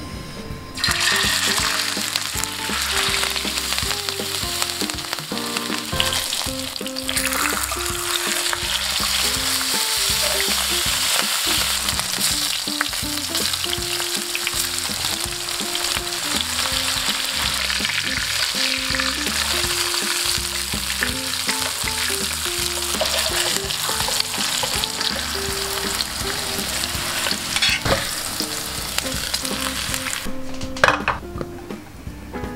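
Salmon steaks frying in hot oil in a pan: a dense, steady sizzle that starts suddenly about a second in, as the fish goes into the oil. Light background music plays underneath.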